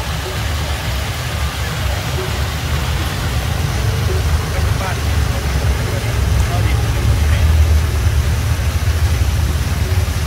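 Plaza fountain running: water jets splashing into the basin and water pouring over the basin's tiled wall make a steady rushing noise, heavy and deep, that grows a little louder after the middle. Faint voices of people in the background.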